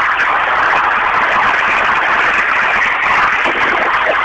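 Loud, steady rushing noise coming through a telephone line, with no voice over it.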